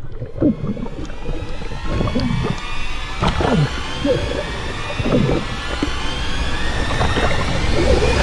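Underwater sound from a diver's action camera: a low watery rumble with irregular bubbling gurgles as a spearfisher swims hard, and a faint high whine rising slowly throughout.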